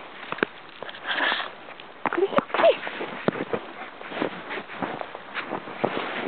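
Footsteps crunching in snow, an irregular run of short crunches, with a short burst of noise about a second in.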